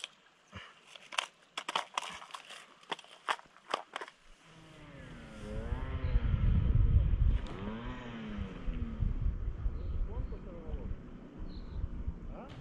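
A quick run of sharp clicks and taps as small fishing gear is handled at a plastic tackle box. About halfway through this gives way to a louder low rumble with rising-and-falling tones over it.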